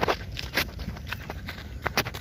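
Irregular footsteps and scuffs on sandy ground, with knocks from the phone being handled as it swings about, over a low rumble of wind on the microphone.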